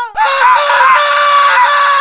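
A high-pitched scream of pain, held on one pitch with small wavers and a short break just after it starts: a cartoon character crying out after being shot.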